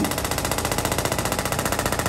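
Radial shockwave therapy handpiece firing a rapid, even train of sharp clicks, about fifteen pulses a second at its 15 Hz setting, as it drives shock waves into a slab of beef.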